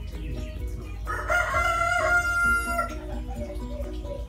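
A rooster crows once, a single call lasting about two seconds, over background music with a repeating melody.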